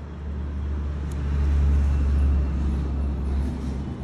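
A low rumble that swells to its loudest around the middle and then eases off, like a vehicle passing.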